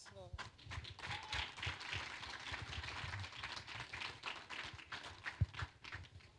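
Congregation sounds after a worship song ends: indistinct voices and a dense patter of scattered clapping, with a single low thump near the end.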